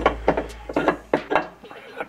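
Aluminum bait-mold plates clinking and knocking against each other and the workbench as they are handled, a quick series of five or six sharp metallic knocks.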